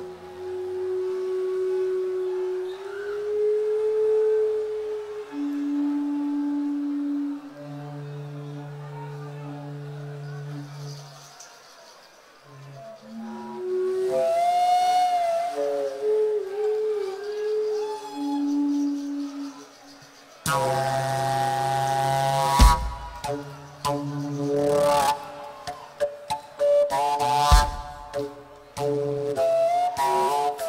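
A live pagan folk band opens a slow song. For the first dozen seconds there are sparse long held notes, one at a time, stepping between pitches. A wavering pitched line follows, and about two-thirds of the way in a louder, fuller passage with deep thumps comes in.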